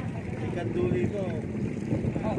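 An engine running steadily at low revs, with people's voices talking briefly over it.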